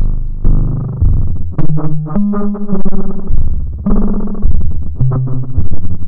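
Eurorack modular synthesizer patch through the Pittsburgh Modular Flamingo harmonic interpolation module, playing a sequence of low, menacing bass notes that step between pitches, each starting sharply and fading, with a faster, choppier run in the middle. An LFO running at almost audio rate modulates the sound, which muddies the sense of pitch.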